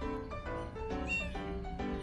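Background music: a melody of short pitched notes, with a brief high sliding note about halfway through.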